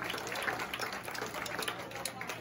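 Scattered clapping with a low murmur of audience voices: irregular claps and ticks, the applause thinning out after a song.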